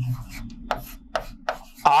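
Chalk tapping and scraping on a blackboard as a formula is written, with about four short, sharp strokes.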